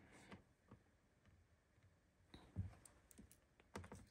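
Near silence with a few faint clicks of red-handled crimping pliers and wires being handled as a butt connector is crimped onto a power wire; the sharpest click comes about two and a half seconds in.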